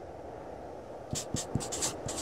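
Scratchy drawing strokes, like a pen or marker on paper, used as a sound effect for the crown logo being drawn. The quick, irregular strokes begin about halfway through, over a steady low hiss.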